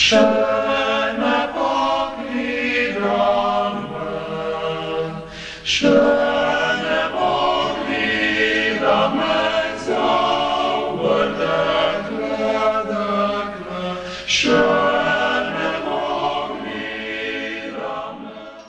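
Male vocal ensemble singing a cappella, in sustained phrases with brief breaks about six and fourteen seconds in.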